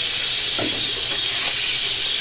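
Water running steadily from a tap into a sink while a face is washed.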